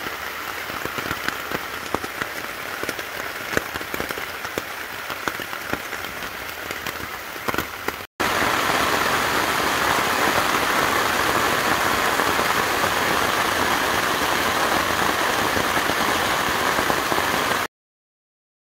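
Rain falling on a tarp, with many separate drops ticking on it. About eight seconds in there is a brief silence, then a louder, steadier rush of rain noise that cuts off just before the end.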